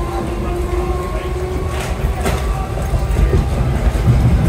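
Interior running noise of a Merseyrail Class 508 electric multiple unit on the move: a steady low rumble of wheels on rails, with a thin whine that fades out about halfway through and a few sharp clicks from the track.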